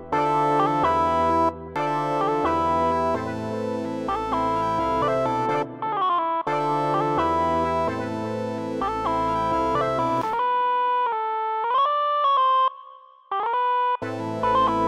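Beat playback: a Roland Zenology synth lead playing a short melody with pitch slides, layered over keyboard chords and bass. About ten seconds in the chords and bass drop out and the gliding lead plays alone, until the full loop comes back near the end.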